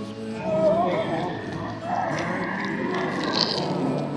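A distressed woman's wordless vocalizing, wavering up and down in pitch, over background music.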